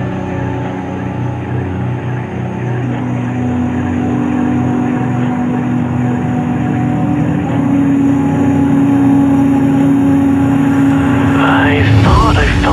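Instrumental stretch of a dark midtempo electronic bass track. A sustained, growling low synth note steps up in pitch twice as the music builds louder, and rising sweeps come in near the end.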